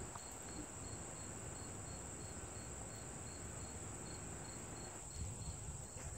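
Insects trilling steadily, faint: a continuous high-pitched buzz with a fainter, lower chirp pulsing about three times a second.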